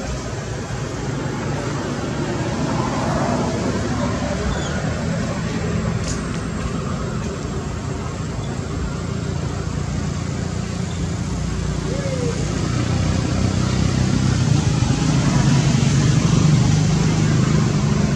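Steady low rumble of passing road traffic, growing louder in the second half, with a faint murmur of voices.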